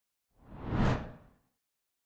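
Whoosh sound effect for an animated logo intro: one swell of rushing noise with a deep low rumble beneath it, building to a peak just under a second in and dying away by about a second and a half.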